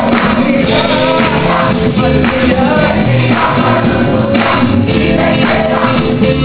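Gospel worship music: a choir of many voices singing over instrumental accompaniment, steady and loud.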